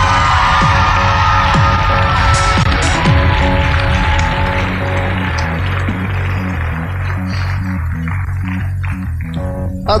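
Results-show music bed with a steady pulsing bass. Over it, studio audience cheering and applause is loudest at the start and dies away over the first six seconds or so.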